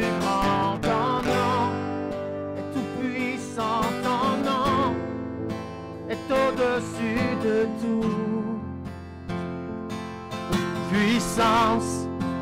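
Acoustic guitar strummed in steady chords, with a man singing a worship melody over it; several held notes waver with vibrato.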